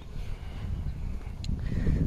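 Uneven low rumble of wind and handling noise on a phone's built-in microphone while it is carried along at walking pace, with one short click about one and a half seconds in.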